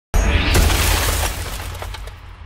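Logo sting sound effect: a sudden loud burst with a deep bass rumble and a swishing rush that rises in pitch, crackling like shattering glass, then slowly fading.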